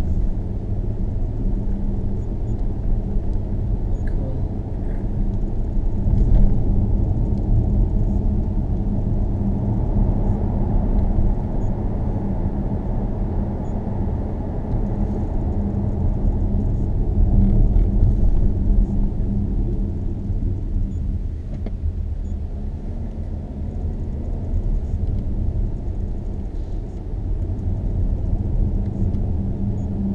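Car driving on a narrow road, heard from inside the cabin: a steady low rumble of tyres and engine with a constant low hum running through it, swelling slightly a few times.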